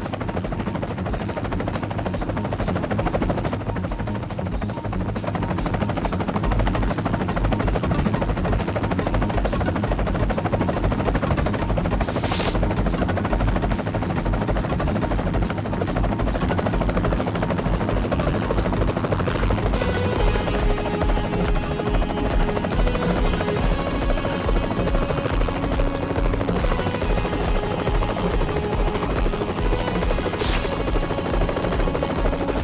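Light helicopter in flight, its rotor chopping in a fast, steady beat, under a background music score that is plainest in the last third. A short whoosh comes about twelve seconds in.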